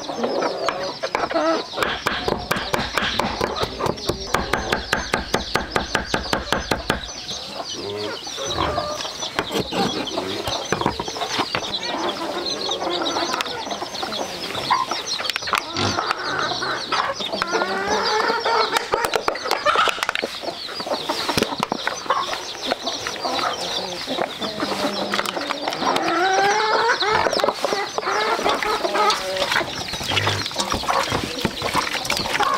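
Chickens clucking and calling throughout. For about the first seven seconds this is joined by rapid, even knife chops on a chopping board as ginger and turmeric are minced.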